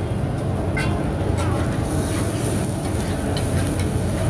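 Oyster omelette frying on a large flat black pan, with a few short scrapes and taps of a metal spatula on the pan. Under it runs a steady low rumble.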